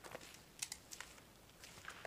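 A few faint, scattered clicks and taps over a low background hiss.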